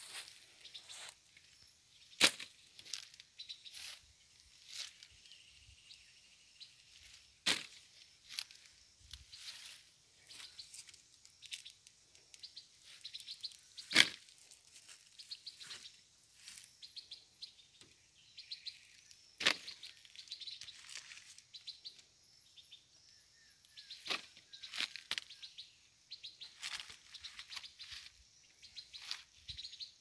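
Small birds chirping, with several sharp cracks spread a few seconds apart; the loudest crack comes about halfway through.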